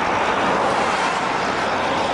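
Steady highway traffic noise: a constant rush of vehicles and tyres on the road.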